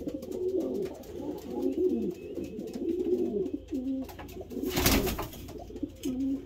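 Racing pigeon cocks cooing over and over in a wooden breeding box, the low swooping coos of males claiming nest boxes. A short loud noise cuts across the cooing about five seconds in.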